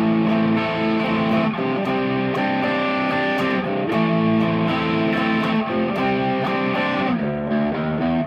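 Electric guitar tuned down a whole step, with a chorus effect, playing ringing B minor and D sus2 chords. The chords are held and change several times.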